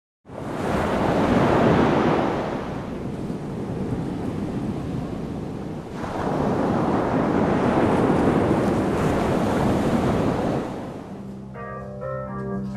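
Ocean surf washing in, swelling and falling back twice. Near the end an organ starts playing held chords.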